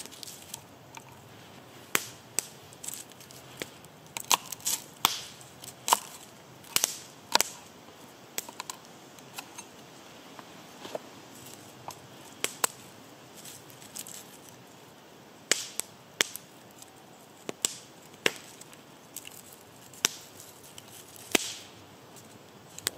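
Garlic cloves being broken from the bulb and peeled by hand on a wooden board: irregular sharp cracks and clicks with papery skin crackle, at uneven intervals.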